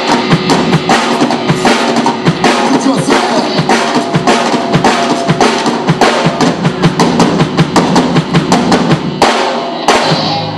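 Live rock band playing loud and fast: a drum kit hammering steady bass-drum and snare strikes under amplified guitars. The music dips briefly just before the end, then comes back in with a hard hit.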